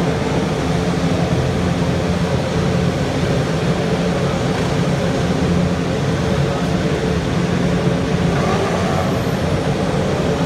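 Formula 1 cars' turbocharged V6 hybrid engines running as the field pulls away from the starting grid, heard as a loud, steady, dense drone.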